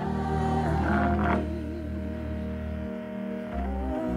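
Live gospel worship music: sustained keyboard chords over a held bass, with a singer holding a wavering note in the middle.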